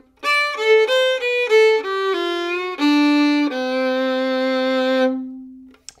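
Solo fiddle playing a two-bar bluegrass lick over the five (D) chord. It is a run of quick notes falling in steps, then a long held low note that fades out near the end.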